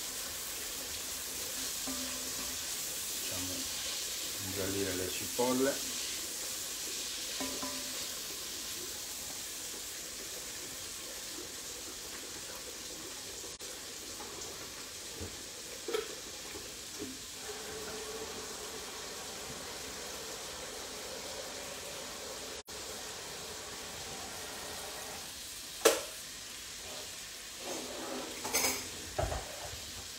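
Chopped onions frying in olive oil in a pot, a steady sizzle, while a spatula stirs them. A few knocks of the spatula against the pot, the loudest a sharp one about 26 seconds in.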